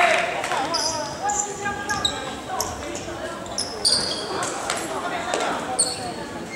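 Basketball court sounds in a gym: short, high sneaker squeaks on the hardwood floor scattered throughout, a few sharp knocks of the ball, and voices from the court.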